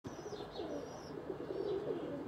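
Faint bird calls: low, wavering calls together with a few short, high, falling chirps.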